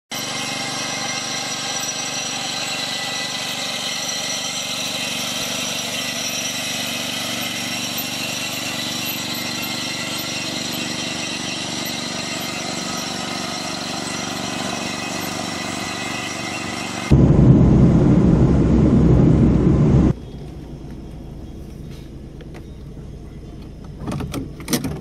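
Small engine of a riding rice transplanter running steadily while it plants a flooded paddy. About seventeen seconds in, a louder low rumble cuts in for some three seconds, then gives way to a quieter steady hum.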